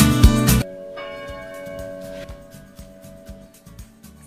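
Upbeat background music cuts off about half a second in, leaving church bells ringing, quieter and fading toward the end.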